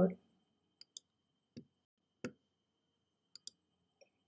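A handful of faint, sharp clicks in an otherwise quiet pause: two close together about a second in, single ones a little later, and another close pair near the end.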